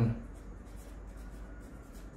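Felt-tip pen writing a word on a sheet of paper on a desk: a faint, steady scratching of the tip across the paper.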